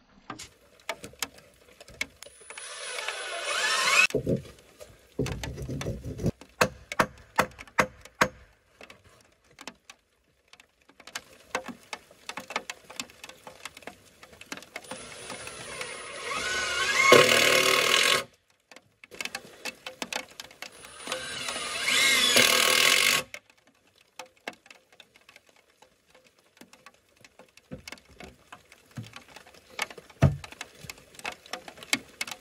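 Cordless drill running in three bursts of a few seconds each, its whine climbing in pitch, at about three, sixteen and twenty-two seconds in, driving fasteners into the floor joists. Between the bursts come knocks and clatter of lumber and tools being handled.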